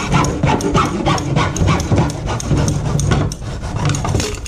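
Hacksaw cutting through the plastic inlet nipple of a sump basin, in quick, even back-and-forth strokes.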